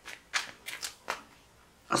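A deck of tarot cards being shuffled in the hands: a handful of short, papery card strokes in the first second or so.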